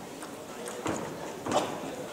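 Table tennis ball clicking off the bats and the table during a rally. The two sharpest knocks come about a second in and half a second later.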